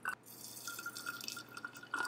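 A thin stream of water poured into a glass bottle onto loose black tea leaves: a steady trickle that rings with a thin, even tone from the bottle.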